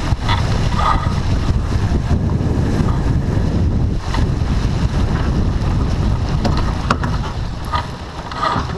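Steady, heavy wind noise on the microphone of a camera aboard a sailboat under way, with a sharp click about seven seconds in.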